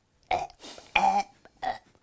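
A woman's wordless vocal noise of disgust: a breathy hiss, then a short guttural 'eugh' about a second in.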